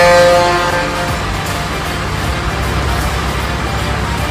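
A truck horn holds one steady chord and fades out about a second in. A low rumble continues underneath, with background music.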